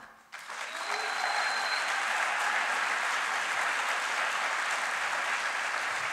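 Audience applauding, starting a moment after the speech stops and holding steady.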